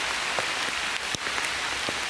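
Steady, even hiss like rainfall, with a few faint ticks.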